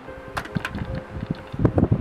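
Blue masking tape being pulled and torn from the roll and handled: scattered light ticks, then a louder burst of crackling near the end, over faint background music.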